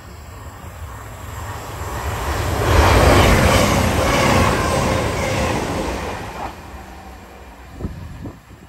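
CrossCountry diesel passenger train passing close by at speed without stopping. It builds up, is loudest about three to four seconds in, and dies away by about seven seconds.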